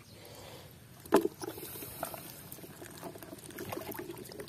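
Wet splashing and dripping in a shallow muddy pool as a climbing perch is handled and taken out of it: one sharp slap about a second in, then small drips and wet clicks.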